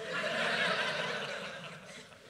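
Audience laughing together, swelling quickly and then dying away.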